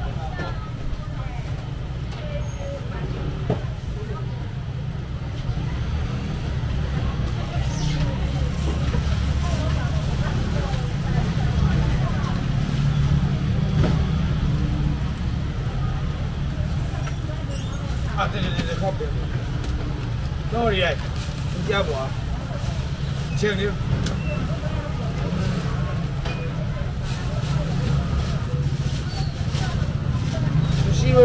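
Background chatter of a busy market crowd over a steady low rumble, with a few scattered clicks.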